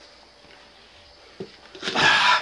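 Quiet room tone with a single soft knock about one and a half seconds in, then a short rush of noise just before the end.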